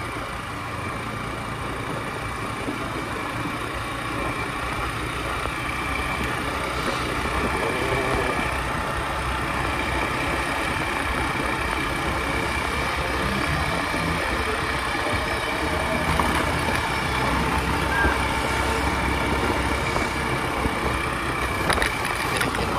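Small motorcycle's engine running steadily while riding along a rough road, with wind and road noise on the microphone; it grows slightly louder over the first several seconds.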